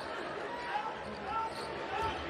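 Basketball being dribbled on a hardwood court during live play, over the steady background of an arena crowd.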